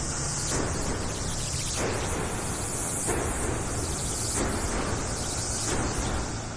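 A steady rushing hiss, with faint soft thuds a little more than once a second.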